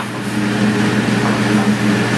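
Steady background noise of a commercial restaurant kitchen: a continuous hum with a low drone from the ovens and kitchen equipment under a constant hiss.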